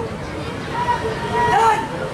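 A drawn-out shouted drill command from a platoon leader, rising and falling in two long calls in the second half, over steady outdoor crowd hubbub.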